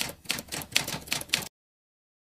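Typing sound effect: a quick run of sharp key clacks, about five a second, matching letters appearing on screen one by one. It cuts off suddenly about a second and a half in.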